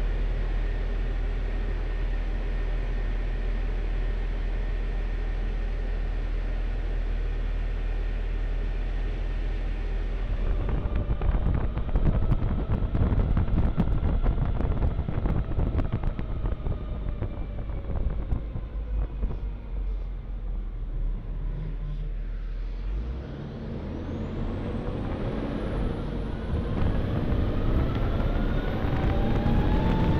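Engine of a Cadillac Gage V-100 armored car, heard from inside the cabin. It runs steadily at first; about ten seconds in it turns louder and rougher as the vehicle pulls away. Near the end it dips briefly, then climbs in pitch as the vehicle speeds up, joined by a high rising whine.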